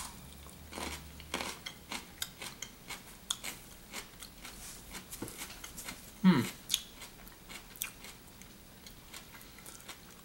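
Chewing of a crunchy unripe green almond fruit: a run of small irregular crunches that starts right after the bite.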